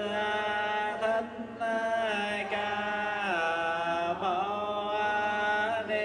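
A male voice chanting a Vietnamese Buddhist invocation through a microphone, holding long notes that slide slowly up and down, with a couple of brief pauses.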